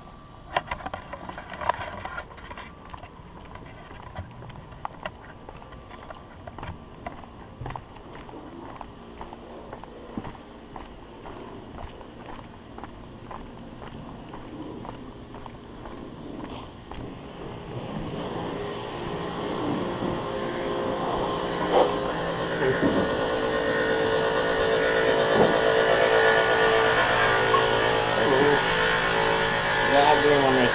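Footsteps on pavement with scattered light clicks. From about halfway, a steady mechanical hum made of several held tones builds up and is loudest near the end.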